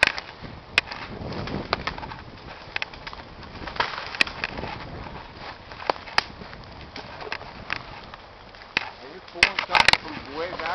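Branches cracking and snapping at irregular moments as a steam donkey's logging cable drags a log through brush, with a quick burst of cracks near the end.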